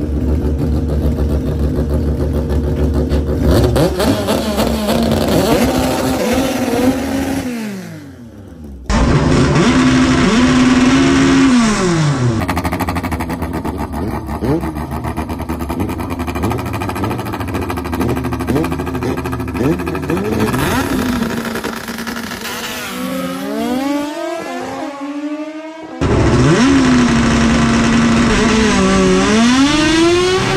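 Naturally aspirated Honda drag car engines revving hard and accelerating, with held high revs that drop away and rising sweeps as the car pulls through the gears. The sound breaks off suddenly about eight seconds in and again near the end as the shots change.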